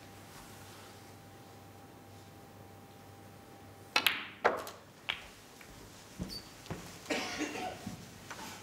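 Quiet arena hush, then snooker balls: a sharp click of the cue tip on the cue ball, a second click as the cue ball strikes the black about half a second later, and a further click and softer knocks as the black is potted. A short rustle follows near the end.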